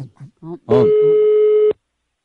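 Telephone line tone: one steady beep about a second long that cuts off sharply, the ringing tone of an outgoing call being placed.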